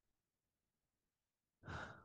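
Near silence, then a person's short audible intake of breath near the end.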